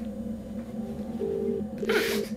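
British telephone ringing tone heard down the line by a caller: a double ring, two short steady tones in quick succession, starting about a second in. A steady low hum runs underneath.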